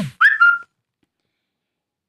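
A brief high whistle-like tone near the start, lasting about half a second: it rises quickly, then holds one steady pitch before cutting off.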